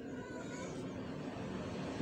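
Faint, steady background sound of a distant motor vehicle running.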